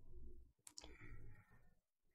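Near silence with two faint, quick clicks about two-thirds of a second in.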